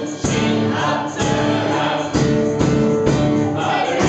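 Upbeat song: several voices singing together over music with a steady beat.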